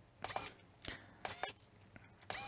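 Three faint, short clicks, spaced irregularly, with near quiet between them.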